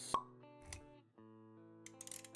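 Motion-graphics intro sound effects over soft music: a sharp pop with a short ring right at the start, then a low soft thud a little past the middle, with held musical notes underneath.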